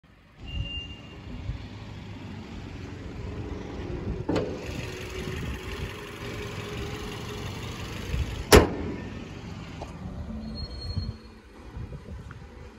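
Toyota Vios's four-cylinder VVT-i petrol engine idling steadily, with two sharp knocks, about four and eight and a half seconds in, the second the louder.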